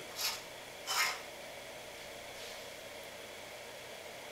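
Two short rasping scrapes, about a third of a second and a second in, as a 100 W incandescent light bulb is screwed into its socket to add load, over a faint steady hiss.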